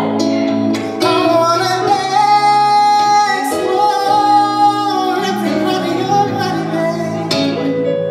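Live music: a male singer holding long sung notes over a sustained keyboard accompaniment.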